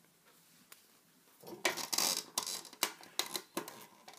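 Hands working rubber bands onto a plastic Rainbow Loom's pegs. It is quiet at first, then about a second and a half in comes a quick run of small clicks and rustles.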